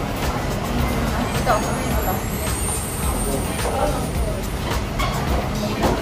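Restaurant ambience: indistinct voices and background music over a steady low rumble, with scattered light clicks like tableware.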